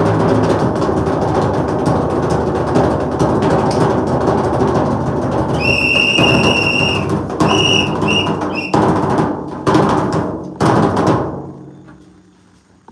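Percussion-led stage music with dense, rapid drumming. About halfway through a high held note sounds, then a few short high notes, and a few heavy drum strokes follow before the music fades out near the end.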